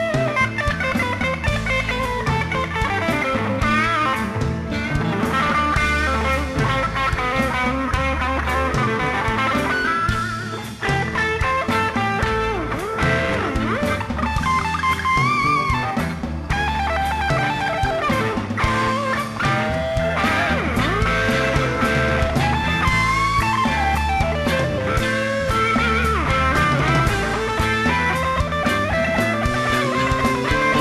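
Live blues band playing an instrumental break: an electric guitar lead with bending notes over bass, keyboards and drums.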